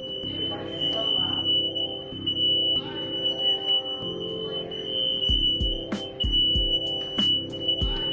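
Smoke alarm sounding one steady, high-pitched tone, set off by cooking. The tone breaks off briefly a little before the end.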